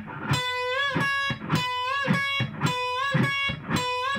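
Les Paul-style electric guitar playing a unison-bend lick three times over: a note on the B string at the 12th fret bent up a whole step to C sharp, cut off, then the same C sharp picked unbent on the high E string at the 9th fret. Each bend is heard as a rising slide into pitch, followed by a steady matching note.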